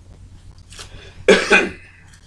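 A man coughing twice in quick succession, loud, a little past the middle.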